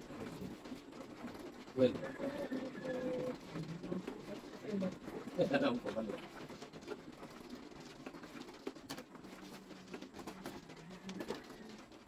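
Plastic mahjong tiles clicking as they are drawn from the wall and set down on a felt table, with a sharp clack about two seconds in. Soft, low cooing calls and quiet voices sound behind.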